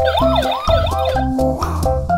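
An electronic siren sweeping quickly up and down about four times in the first second, over background music with a steady beat; a brief rushing noise follows near the end.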